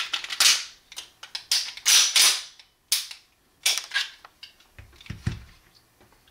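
Metal clicks and short rasps from a 1911 pistol's mechanism being worked by hand, a handful of them about half a second to a second apart, followed near the end by a couple of duller thumps.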